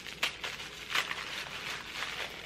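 Rustling and handling noise as a small fabric advent-calendar bag is opened and a mini skein of yarn is drawn out, with two sharp clicks about a quarter second and a second in.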